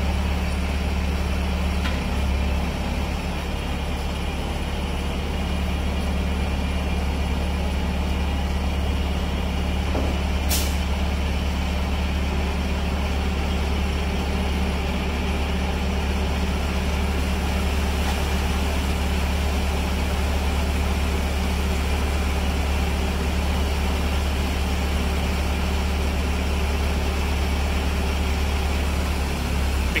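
Concrete mixer truck's diesel engine running steadily with its drum turning while it discharges concrete down the chute into a skid steer's bucket. A single sharp click about ten seconds in.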